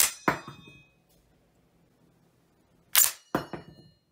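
Steyr M95 straight-pull rifle's bolt being worked, giving two pairs of sharp metallic clacks about three seconds apart, each followed by a short metallic ring, as the empty en-bloc clip drops free of the magazine.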